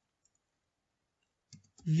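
Near silence, then a few faint computer keyboard key clicks near the end as a word is typed; a man's voice starts just at the end.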